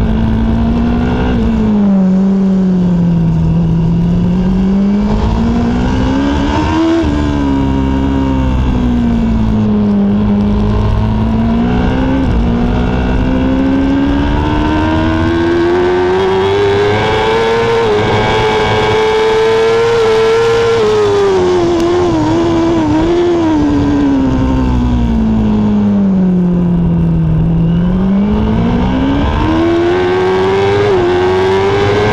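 Racing superbike engine at full race pace, heard from a camera on the bike's fairing: the engine note climbs and falls again and again, with one long climb through the middle and a long fall after it, over a steady rush of wind.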